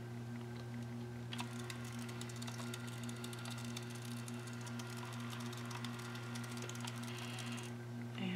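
Handheld thermal label maker printing a label: its motor feeds the tape out with a fast, fine ticking that starts about a second and a half in and stops just before the end.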